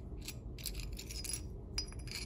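A few faint, scattered clinks and ticks of a small glass cup that arrived broken, as it and its loose shard are handled in the fingers.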